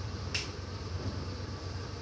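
A single sharp click of a wall light switch being pressed, over a steady low background hum.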